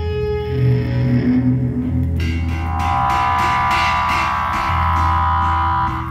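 Live instrumental music from a trio of bassoon, drums and electronics: a repeating low bass figure under held tones. About two seconds in, a wash of cymbals and drums comes in under a sustained high note.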